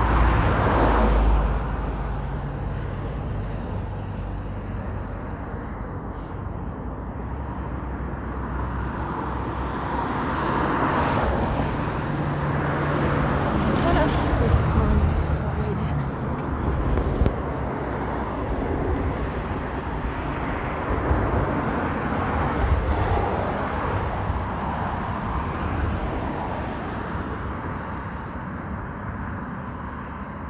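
Road traffic on a city bridge: a steady wash of car noise, swelling louder several times as vehicles pass close by.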